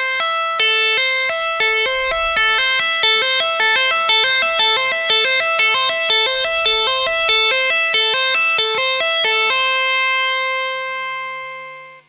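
Clean-toned Stratocaster-style electric guitar playing a tapping exercise on the high E string. A right-hand tap at the 12th fret, a pull-off to the 5th and a hammer-on to the 8th give three notes (E, A, C) repeated quickly and evenly. The run stops about nine and a half seconds in, and the last note rings on and fades out.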